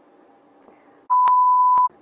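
A steady single-tone censor bleep, under a second long, starting about a second in and masking a swear word.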